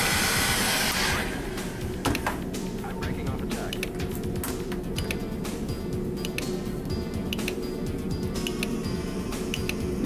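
Heat gun blowing on a hydraulic control valve to heat its thermal switch, a loud rushing hiss that shuts off about a second in. After it, a low steady hum with small scattered clicks.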